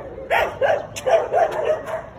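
Dogs barking, a rapid run of about six or seven short barks in two seconds.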